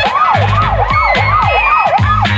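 Emergency-vehicle siren in a fast yelp: its pitch swoops down and back up about three times a second, loud and steady.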